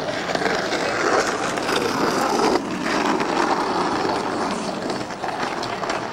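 Skateboard wheels rolling on asphalt: a continuous rough rolling noise that briefly dips about two and a half seconds in.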